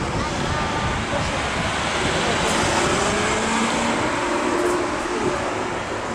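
City street ambience: steady traffic noise with faint voices of passers-by mixed in.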